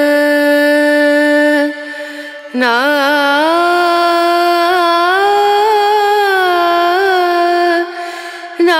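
Background music: a solo voice sings long held notes that bend and waver in pitch. It breaks off briefly about two seconds in before another long phrase.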